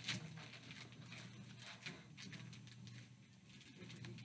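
Faint scattered clicks and rustles of medical equipment being handled at a bedside, the sharpest click just at the start, over a steady low room hum.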